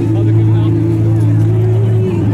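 Music over loudspeakers, with sustained low notes that shift pitch now and then, mixed with crowd chatter.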